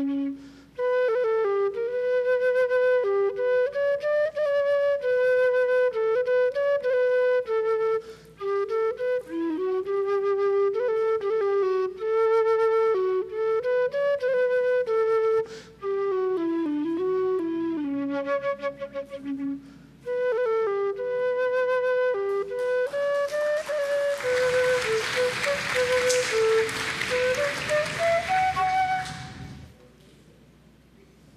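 A solo flute plays a melody in phrases with short breaks between them. Applause rises over it for the last several seconds, and both stop just before the end.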